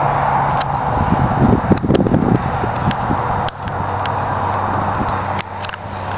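A car left idling, heard as a steady low hum under an even hiss of air, with an uneven rumbling stretch about a second in and a few light clicks.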